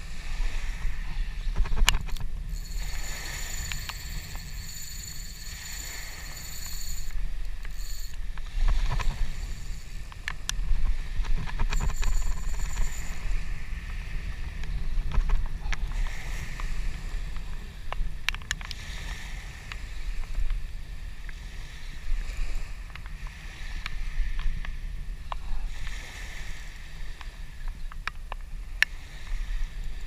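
Wind buffeting the camera microphone in a steady low rumble, with small waves lapping on a sand and shell beach and scattered light clicks. A faint high thin whine comes and goes twice in the first half.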